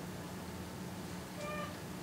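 Quiet room tone with a steady low hum, and one brief, faint high-pitched squeak about one and a half seconds in.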